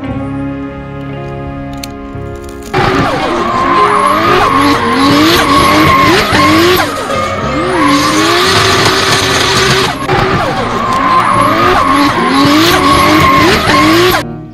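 Soft background music, then about three seconds in a loud race-car sound effect cuts in suddenly: an engine revving up and down with squealing tyres, dipping briefly about ten seconds in and cutting off at the end.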